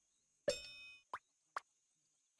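Cartoon sound effects: a single pinging plink that fades over about half a second, followed by two quick rising plops.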